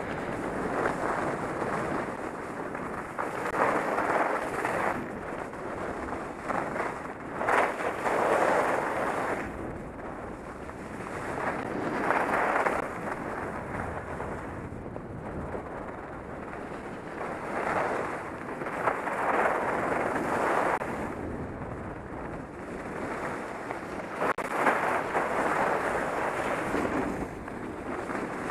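Wind rushing over a helmet-mounted camera's microphone as the rider moves down a ski slope, a steady roar that swells and eases in surges every few seconds.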